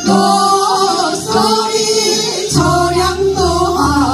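Women singing together through microphones over instrumental accompaniment; the low bass part of the accompaniment drops out for the first two seconds or so, then comes back.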